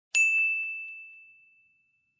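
A single bright ding sound effect, struck once and ringing out on one clear high note that fades away over about a second and a half.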